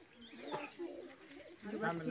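Faint voices of a gathered crowd in the open, with a man's voice starting up more clearly near the end.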